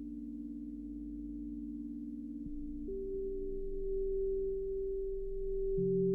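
Behringer/ARP 2500 modular synthesizer playing steady sine-wave tones that change in sudden steps: two low held notes, one dropping out about two and a half seconds in and the other jumping up in pitch a moment later, then a new lower pair of tones entering near the end.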